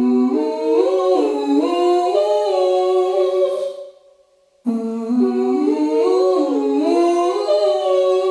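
Layered, wordless vocal harmonies hummed a cappella: several voices climbing together in steps and then holding a chord, in two phrases of about four seconds, with a brief break between them about four seconds in.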